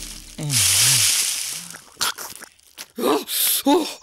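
Dry straw rustling and crunching under two men sprawled in it, with a man's low voice sounding over it. A few short clicks follow, then brief speech near the end.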